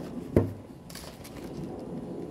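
A single thump about half a second in, then faint rustling as a folded paper template is handled and turned.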